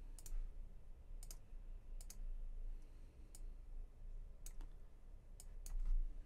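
Computer mouse clicking about eight times, several in quick pairs, over a faint low hum.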